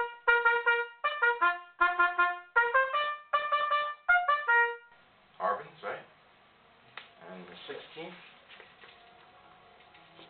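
Trumpet playing a short phrase of separate, cleanly tongued notes for about five seconds, then stopping; quiet talk follows.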